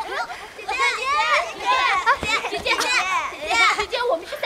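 Young children talking in high-pitched voices, calling out one after another with swooping pitch.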